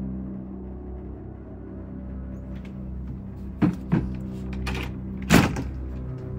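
A low, sustained drone of eerie score, broken by two sharp knocks on a wooden door about three and a half seconds in. A louder bang follows near the end.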